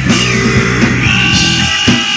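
Live rock band playing an instrumental stretch between sung lines: held guitar notes over drums, with a sharp drum hit near the end.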